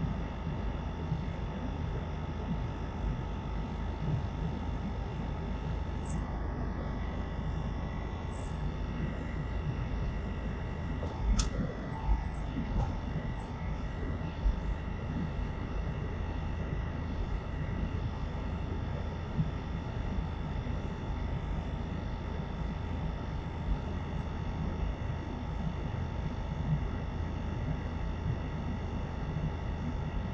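Steady car road and engine noise heard from inside the cabin while driving slowly. A few brief sharp knocks come about eleven to thirteen seconds in.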